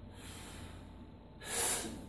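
A weightlifter's breathing under a loaded barbell: a faint breath, then a sharp, loud breath about a second and a half in, lasting about half a second. It is the bracing breath taken just before a heavy back squat.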